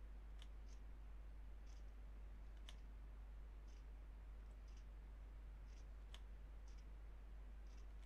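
Faint, scattered clicks of a computer input device as strokes are drawn on screen, sharper ones about half a second, two and a half and six seconds in, over a steady low electrical hum.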